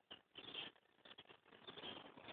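A small bird moving about its nest, making faint scratching and rustling in short irregular bursts.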